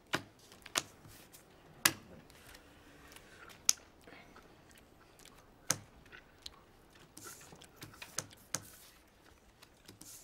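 Playing cards slapped down one at a time on a stone-topped café table: sharp, irregular smacks, about seven of them a second or two apart, with softer handling of cards in between.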